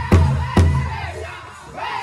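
Powwow big drum struck hard in unison by a seated drum group: two loud beats in the first half second, then a pause in the drumming filled with high-pitched singing and crowd voices rising near the end.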